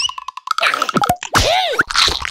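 Cartoon sound effects and a character's wordless vocal noises. A rapid run of short, even beeps comes first, then a noisy burst, and near the end a pitch that swoops up and back down like a boing.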